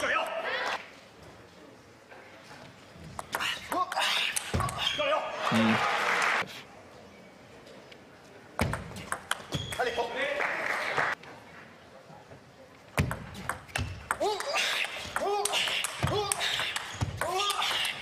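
Table tennis ball struck back and forth in fast rallies: crisp ticks of the ball off the rackets and the table, in three bursts of play separated by short quiet pauses.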